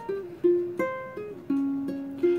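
Ukulele played on its own: a slow run of single plucked notes, each ringing and then fading before the next.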